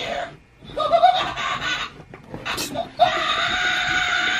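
Pennywise Window Wiggler toy's voice box playing a recorded clown-voice phrase through its small speaker, in two bursts, about a second in and again near the end. The voice is a sound-alike, nothing like the film actor Bill Skarsgård.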